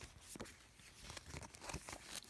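Faint rustling and crinkling of a paper sticker sheet being handled and bent, with a few short crackles.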